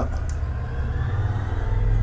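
A low background rumble with a faint whine over it, growing a little louder near the end.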